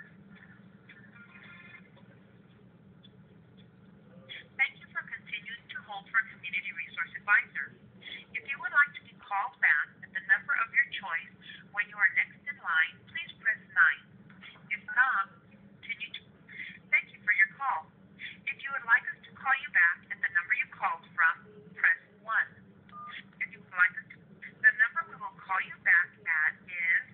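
Sound of an automated phone line heard through a smartphone's speakerphone: a recorded voice or hold audio in short bursts, squeezed into the narrow telephone band, over a steady low line hum. Keypad tones sound as digits are entered. The phone sound begins about four seconds in.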